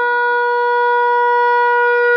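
Shofar sounding one long, steady, unbroken note.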